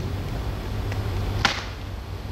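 Quiet hall with a low steady hum, and one sharp click about one and a half seconds in, with a fainter one just before it, as sheets of paper are handled at a small table.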